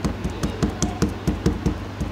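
Metal meat-tenderiser mallet tapping rapidly on a piece of frozen fish bait on a plastic cutting board, about five or six light knocks a second, softening the bait.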